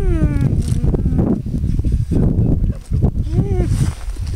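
Wind rumbling and buffeting on the microphone, with rustling and handling noise, broken by a few short vocal sounds from a person that fall in pitch: one just at the start, one about a second in and one near the end.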